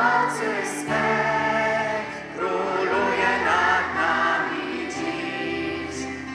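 A church choir sings a hymn in long held notes, with several voices together.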